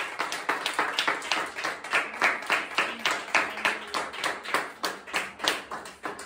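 Hands clapping in a steady rhythm, about three claps a second, growing fainter toward the end.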